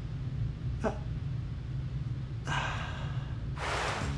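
A faint background music bed of low held tones, with a brief spoken 'uh' about a second in. From about two and a half seconds a hissing whoosh sound effect builds and swells brighter just before the end, leading into a transition.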